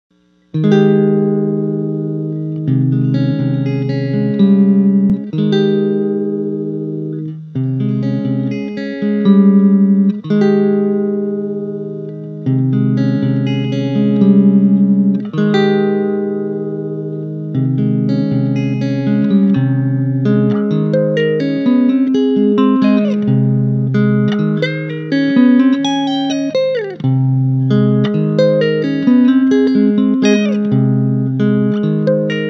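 Electric guitar, a Fender Telecaster with a capo, playing a midwest emo twinkle riff in standard tuning: ringing arpeggiated chords that start about half a second in. The second half has quicker note runs and a few notes that glide in pitch.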